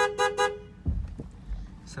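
A car horn gives three short, quick toots, two notes sounding together, over the low rumble of the car driving. A dull knock follows about a second in.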